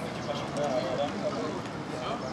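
Indistinct talking and calling from several people at a distance, over steady background noise.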